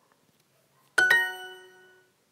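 Duolingo app's correct-answer chime: two quick bright notes about a second in, ringing and fading out over about a second. It signals that the answer just checked was right.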